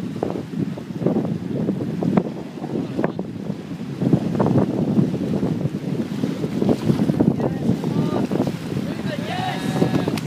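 Wind buffeting the microphone, with small waves washing in over the sand at the water's edge.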